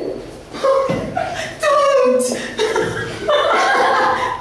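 A boy chuckling and laughing in several short bursts.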